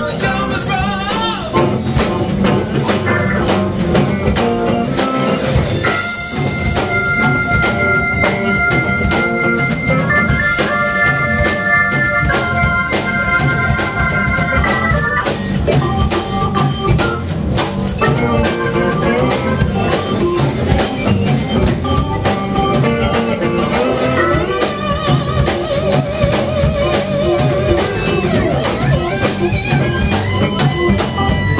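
Live band playing an instrumental passage with a steady drum beat, bass, electric guitars, pedal steel guitar and an organ-toned keyboard. Long held high notes sit over the band for several seconds from about six seconds in.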